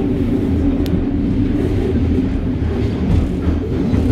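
Paris Métro train running, heard inside the passenger car as a loud, steady low rumble, with one brief high click a little under a second in.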